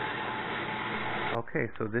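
Horizontal metal-cutting band saw running steadily as it cuts the steel pivot knob off a hydraulic cylinder. The sound cuts off suddenly about one and a half seconds in, and a man's voice follows.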